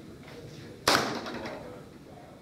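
A Bowtech Guardian compound bow shot at a hog target: one sharp crack of the string and arrow, about a second in, that dies away within about half a second.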